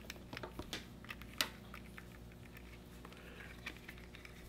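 Faint handling sounds: soft clicks and taps of a clip-lead wire being wound around a small plastic earbud holder, busiest in the first second or so, with the sharpest click about a second and a half in.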